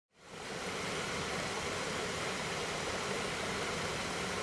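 A steady, even rushing noise that fades in just after the start and holds without change.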